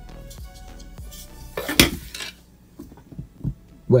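Background music fading out, then about halfway through a loud clatter as a 120 mm Noctua PC fan is put down on a wooden desk, followed by a couple of light knocks.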